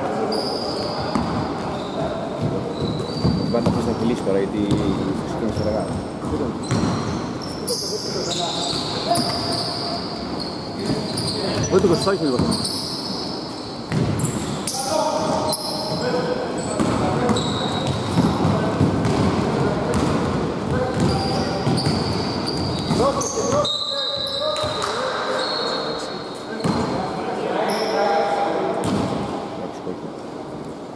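A basketball game in a large gym: the ball bouncing on the wooden floor, short high squeaks of shoes on the court, and players calling out, all echoing in the hall.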